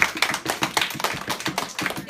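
A class of children applauding, a dense patter of quick hand claps.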